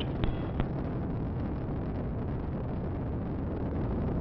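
Steady low rumble of the Ares I-X's solid rocket first stage firing in ascent. Two short clicks sound just after the start.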